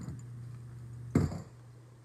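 A single knock of glassware against the countertop about a second in, over a low steady hum that drops out at the knock.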